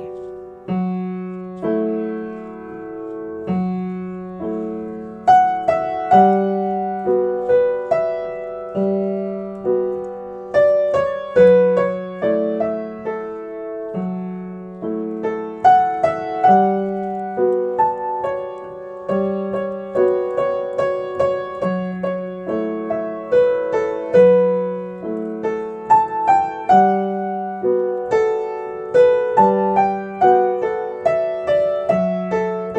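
Yamaha upright piano played in a slow three-four pattern: a left-hand ostinato alternating between two chords, with an improvised right-hand melody in G Lydian over it. The melody is sparse at first and becomes busier from about five seconds in.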